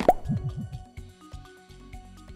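A short quiz-title jingle: a quick upward whistle, then a rapid run of cartoon popping sound effects, over held musical notes that fade away.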